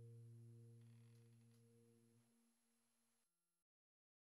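Near silence: a faint, steady low hum with a few overtones slowly fades away, then cuts off to dead silence about three and a half seconds in.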